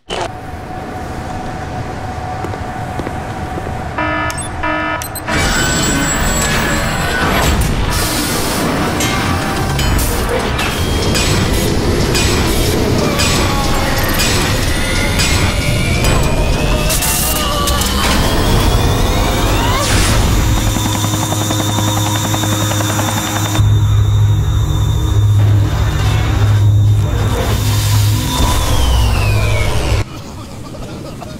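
Music score mixed with sound effects of a large machine powering up: clanks, a rising whine that levels off into a steady high tone, and a deep hum that swells into a heavy rumble over the last several seconds.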